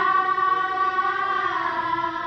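A group of girls singing together, holding one long note that slides down near the end.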